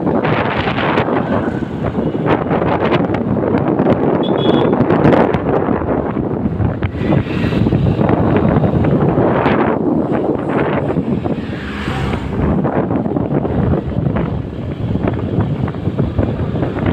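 Wind buffeting the microphone of a moving motorcycle, a loud continuous rush with the bike's engine and road noise underneath.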